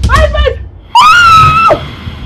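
A woman wailing in distress: a short broken cry, then one long, high-pitched wail held for most of a second.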